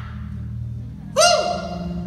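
Keyboard holding a sustained low pad chord under the preaching, with a single loud shouted vocal exclamation about a second in.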